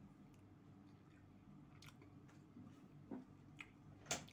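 Faint chewing with a few soft mouth clicks, the loudest about three seconds in, over a low steady hum.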